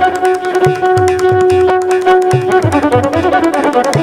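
Carnatic violin playing a varnam in raga Kalyani, with mridangam and morsing accompaniment. The violin holds one long note, then breaks into a fast run of notes about two-thirds of the way in, over regular low drum strokes.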